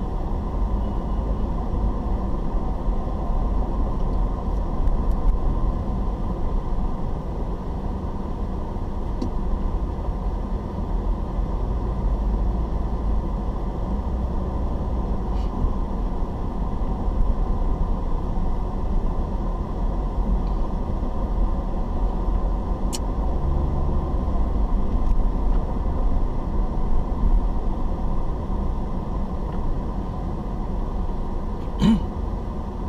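Steady low rumble of a car's engine and tyres heard from inside the cabin while driving in town traffic, with one sharp click about three-quarters of the way through.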